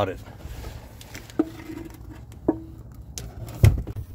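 Two light knocks with a short ring as the spun-off oil filter is handled, then one heavy, dull thud near the end as the used filter is dropped down.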